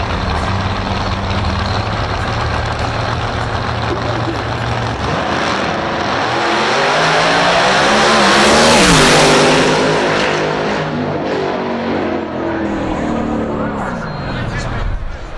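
Two small-tire drag racing cars running their engines at the starting line, then launching and accelerating hard down the strip, the pitch climbing. The nearer car passes loudest about nine seconds in, and its pitch then falls as it pulls away.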